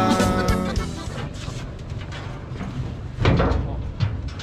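Background music fading out within the first second, then one heavy bang about three seconds in from the steel starting-gate stall as a racehorse is loaded into it.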